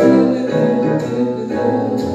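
Recorded jazz backing track playing a steady stream of instrumental chords and notes.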